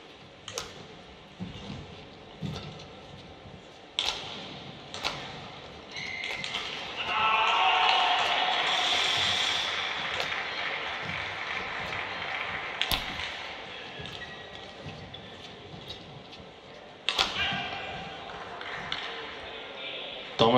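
Badminton rackets striking a shuttlecock in a rally: sharp, crisp hits about once a second at first, then spaced further apart. A louder sustained stretch of sound runs for a few seconds in the middle.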